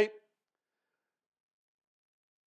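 Near silence: a pause in a man's speech, after the end of his last word fades out at the very start.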